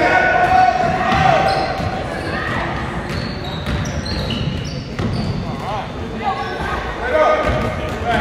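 A basketball dribbled on a hardwood gym floor, with sneakers squeaking as players run, under shouting voices that echo in a large gym.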